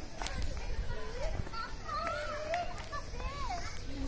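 Children's and other people's voices in the background, high and gliding in pitch, with a few light clicks.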